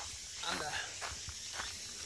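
Footsteps crunching on a gravel path at a walking pace.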